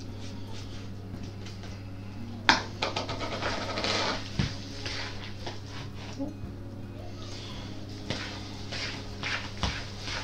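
A fork scraping and clinking against a glass mixing bowl as grated cheese is stirred into a stiff mashed-potato mix, with a sharp knock about two and a half seconds in. A steady low hum runs underneath.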